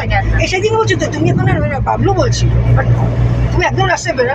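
People talking inside a moving car, over the car's steady low drone.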